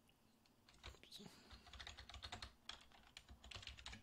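Faint typing on a computer keyboard: quick, irregular key clicks that start about a second in.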